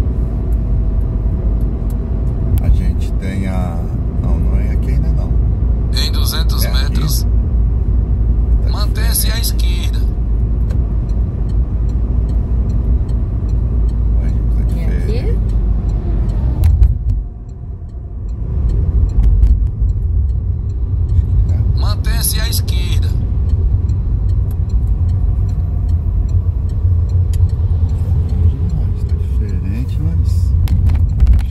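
Car cabin road noise: a steady low rumble of tyres and engine while driving on a highway, with several short hissing bursts and a brief dip partway through.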